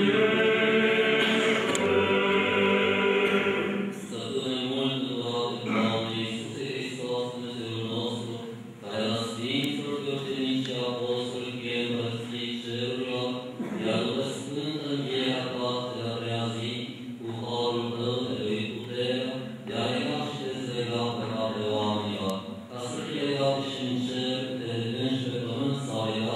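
Eastern Orthodox liturgical chanting: a loud sung phrase ends about four seconds in, then a man's voice intones the memorial prayers in a steady recitative, with short breaths between phrases.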